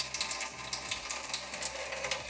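Water running steadily through a newly installed Waterdrop G2 P600 tankless reverse osmosis system during its initial flush, a crackly hiss with a steady low hum beneath it from the unit's pump.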